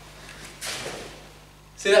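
A brief swishing rustle of karate uniform fabric as a body turns quickly, about half a second in, fading within half a second. A man's voice starts near the end.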